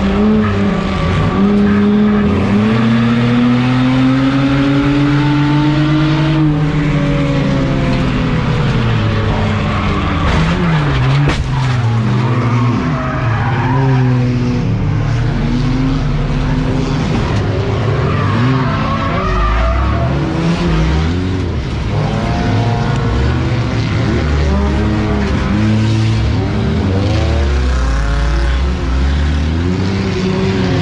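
Engines and tire squeal heard from inside a Grocery Getter enduro race car running in traffic, the engine revving up and down. About eleven seconds in there is a sharp impact as the car is hooked into the wall and the airbag goes off. Engine sound rising and falling goes on after the crash.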